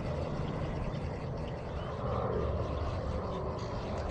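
A steady low drone like a distant engine, with no distinct events, swelling slightly about halfway through.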